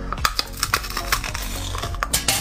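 Crisp crackling crunches as a large glazed, crusty food is bitten into and chewed, over background music.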